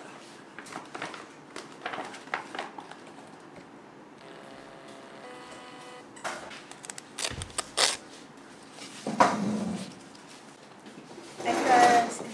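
Paper bag rustling and handling clicks, then a small portable thermal printer whirring with a steady multi-tone hum for about two seconds as it feeds out a printed strip, followed by a few sharp paper clicks and crinkles.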